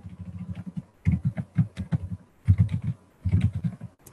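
Computer keyboard being typed on in quick runs of keystrokes, broken by short pauses.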